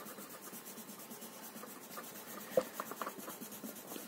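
Faint scratching of a blue colouring crayon shading on paper, with a small tap about two and a half seconds in.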